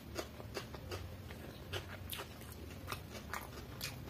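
Close-miked mouth chewing a mouthful of food: irregular wet clicks and smacks, roughly two a second, over a faint low hum.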